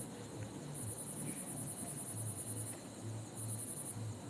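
Insects trilling: a high-pitched pulsing trill that comes in bouts of about two seconds with short breaks between, over a low pulsing hum.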